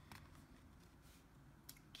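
Near silence with faint handling of tarot cards: a card slid off the front of the hand onto the spread, with a few soft ticks of card edges, two of them near the end.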